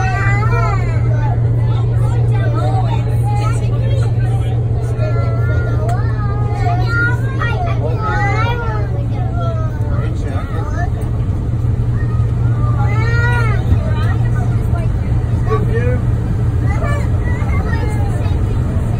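Sydney Metro train running through a tunnel: a steady low hum and rumble, with people's voices chattering over it.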